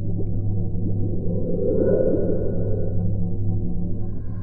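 Synthesized sound-design drone: a steady low hum under a cluster of short rising pings, swelling to a peak about halfway through.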